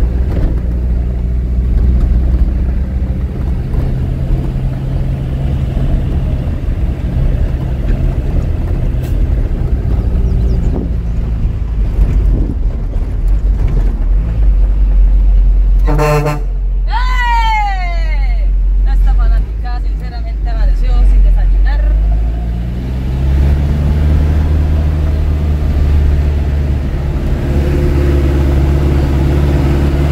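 Truck engine running steadily as heard from inside the cab on a rough road, with a short horn toot about halfway through, followed by a few falling whistle-like tones. Near the end the engine note rises and holds higher as the truck pulls.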